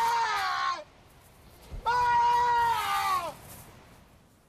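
A man's voice calling out in two long, drawn-out shouts, each held on one pitch and sliding down at the end.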